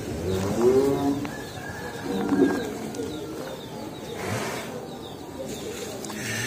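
Doves cooing in low, soft phrases, with faint chirps from small birds.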